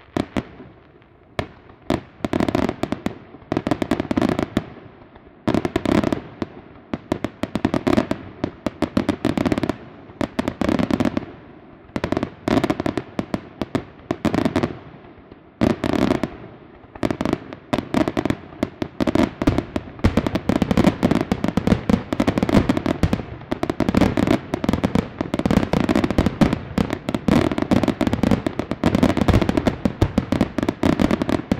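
Aerial fireworks bursting in rapid clusters of sharp cracks, coming in waves with short lulls. From about halfway on they merge into an almost continuous barrage of crackling.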